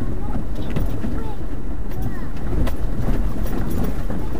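Four-wheel-drive vehicle driving slowly along a stony stream bed through a rock tunnel: a steady low rumble of engine and tyres, with scattered light clicks of stones and gravel under the wheels.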